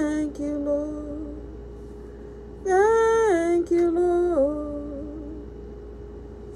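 A woman singing a slow worship song, holding long notes that slide from one pitch to the next, in two phrases: one trailing off in the first second and a half, another from about three seconds in. A steady held tone sounds underneath.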